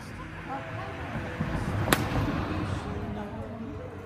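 A golf club striking a ball off a hitting mat: one sharp click about two seconds in, over background song with music.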